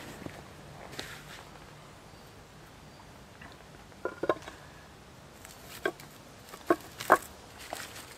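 A flat granite cooking slab set down and shifted on the fire-pit rocks so it sits level: a few sharp stone-on-stone clacks, a pair about four seconds in and several more near the end.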